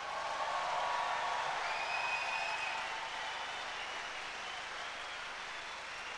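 Large open-air crowd applauding, swelling about a second in and then slowly dying down.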